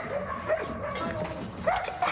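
A dog giving a string of short, high-pitched calls.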